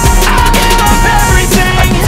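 Hip-hop music with a steady beat.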